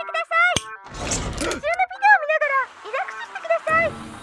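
A high, sing-song cartoon voice speaking from the toilet's animated control display, with a short burst of rushing noise about a second in and another near the end.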